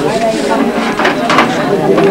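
Voices talking over one another, with two short sharp sounds about a second in.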